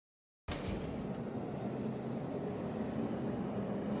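Steady drone of stock car engines running around the track, heard as the broadcast's track ambience, after a half-second gap of silence at the start.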